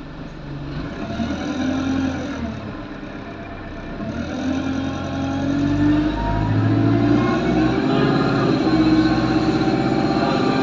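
Alexander Dennis Enviro200 single-deck bus heard from inside the cabin, its engine pulling with the pitch rising. The pitch drops once at a gear change about two seconds in, then climbs and grows louder from about four seconds, with a faint high whine rising near the end.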